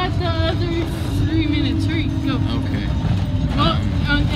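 Steady low rumble of a school bus on the move, heard from inside the passenger cabin, with voices chattering over it.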